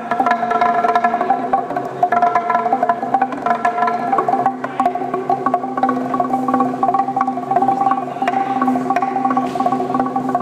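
Txalaparta, the Basque instrument of wooden planks struck with upright sticks, played in a fast, unbroken run of pitched wooden knocks.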